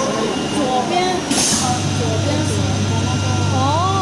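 Automatic flatbed cutting table's conveyor feed running, a steady low machine hum that starts about one and a half seconds in, just after a short hiss, as the printed sheet is drawn forward.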